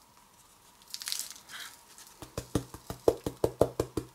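Handling noise at a hobby table: a brief rustle of paper, then a quick run of about a dozen light clicks and knocks, some six a second, as the miniature terrain bases are picked up and moved.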